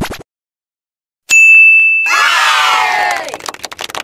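Reveal sound effect: after a brief silence, a steady electronic ding rings for under a second, then a crowd cheers with falling pitch and fades into scattered clicks.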